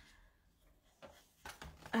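Quiet room with a few faint, short handling sounds about a second in and again near the end, as paper is slid into a paper trimmer and lined up.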